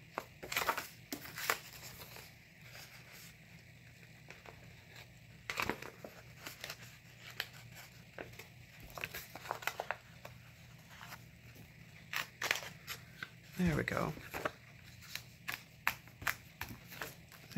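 Handheld hole punch snapping through the edge of a planner page several times, with paper rustling and crinkling as the sheets are moved and lined up.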